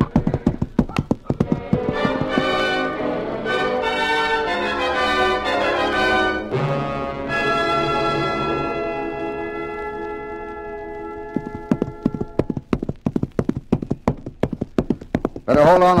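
A galloping horse's hoofbeats run throughout, under a short music bridge. The music comes in about a second and a half in and ends on a held chord that fades out about three-quarters of the way through. After that the hoofbeats carry on alone.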